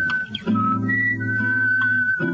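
A man whistling a slow jazz melody of long held notes into a microphone, with a brief break about a quarter second in. Sustained electric jazz guitar chords sound under it, with a new chord about half a second in.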